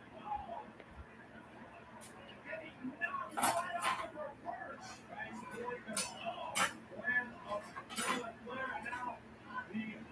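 Dishes and utensils clinking and knocking, about half a dozen sharp strikes spread over several seconds, with faint voices underneath.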